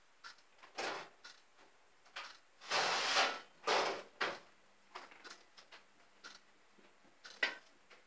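Off-camera rummaging for another baking tray: a drawer sliding open and shut, with scrapes and clatters of kitchenware, the longest around three to four seconds in and a sharp knock near the end.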